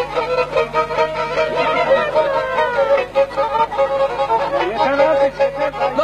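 Black Sea kemençe, a small three-stringed bowed lyre, playing a horon dance tune: quick melody notes over a steady held drone note.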